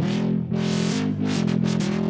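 Dubstep-style electronic track playing from a work-in-progress remix: a pitched synth bass whose filter sweeps open and shut several times a second, following an automated filter-frequency envelope on a Harmor synth.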